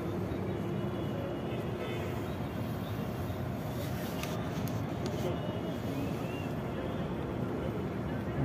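Steady low hum of outdoor urban background noise, with a few faint clicks about four to five seconds in.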